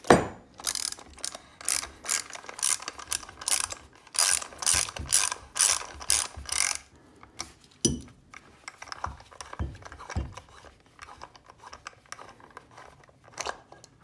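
Ratchet socket wrench clicking in quick bursts, its pawl skipping on each back-stroke as the 19 mm buttstock nut is backed off through a long extension. The clicking stops about seven seconds in, followed by a few scattered knocks.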